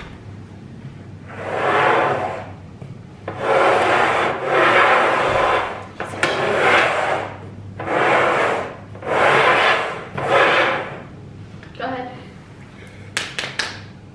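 Upturned bowls being slid and shuffled across a wooden tabletop: about seven rubbing swishes, one after another, then a few light clicks near the end.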